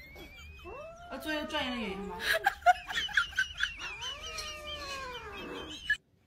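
Ginger kitten meowing: two long meows that rise and fall in pitch, about a second in and again from about four seconds in, with a person's voice alongside.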